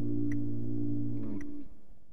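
Closing music ending on a held electric guitar chord, which rings steadily with a couple of faint ticks over it, stops about three quarters of the way through and then fades away.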